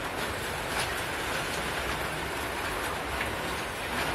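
A freight train of tank wagons rolling past: a steady noise of wheels running on the rails, with a few light clacks.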